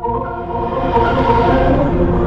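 A Windows startup sound layered in many pitch-shifted copies, from several octaves down to slightly sharp, heard as one dense, sustained chord. It begins abruptly and swells about a second in.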